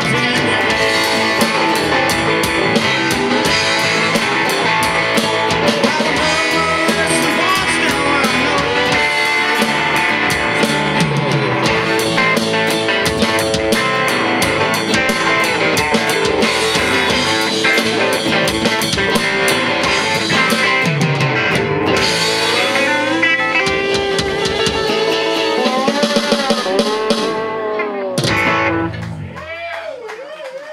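Live rock band playing an instrumental passage on electric guitars and drum kit, heard through the room. The music stops near the end, leaving a final chord ringing out and fading.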